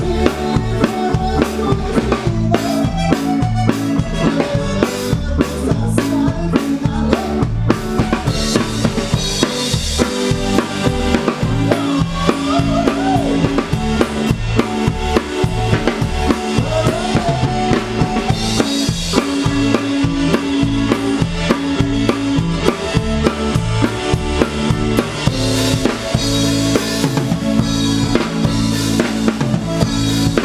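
Live band playing a tejano song, with the drum kit loudest: steady kick and snare hits under keyboard, bass and guitar, heard from right beside the drums.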